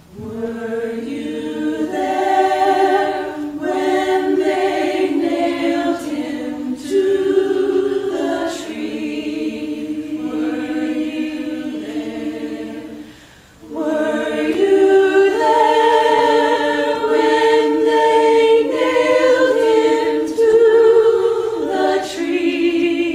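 Choir singing slow, sustained chords in long phrases, with a brief break between phrases about halfway through.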